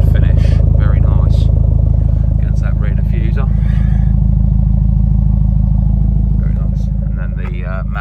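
2019 BMW M135i's turbocharged four-cylinder engine idling, heard close to the tailpipes as a steady low drone that eases slightly near the end.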